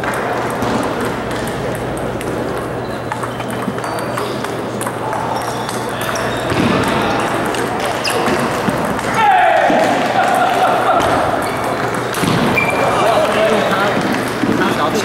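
Ping-pong balls ticking on tables and paddles over a steady hubbub of chatter in a table tennis hall, with a brief falling squeal about nine seconds in.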